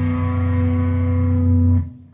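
Metal music ending on a held low chord from guitars and bass that cuts off sharply near the end.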